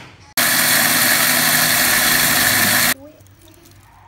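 A loud, steady rushing noise with a low hum under it, lasting about two and a half seconds and cutting in and out abruptly.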